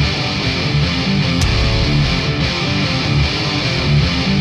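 Background rock music with guitar, playing steadily.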